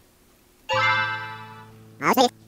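An electronic keyboard chord, with a piano-like tone, struck sharply about two-thirds of a second in and slowly fading.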